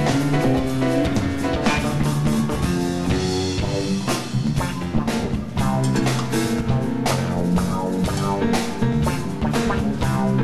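Rock band playing live, with guitar and drum kit.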